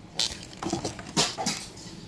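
A few short scrapes and knocks close to the microphone, spaced irregularly about half a second apart: hands handling things at the bedside.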